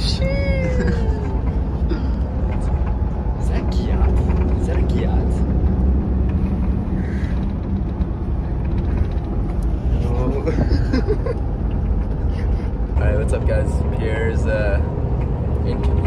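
Steady low road and engine rumble in the cabin of a moving coach bus, with voices now and then over it.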